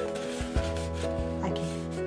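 White cardstock rubbing and rustling as it is handled and folded by hand, with a few short scrapes, over steady background music.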